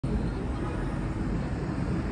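Steady low din of heavy road traffic, with many car and van engines running at once and no single vehicle standing out.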